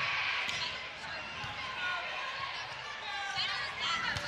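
Volleyball rally: a few sharp smacks of the ball off players' hands and arms, over the steady background noise of a large arena crowd.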